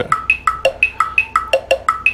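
Chrome Music Lab Rhythm experiment's synthesized drum loop: short percussive hits at a few different pitches, about five a second, in a repeating pattern.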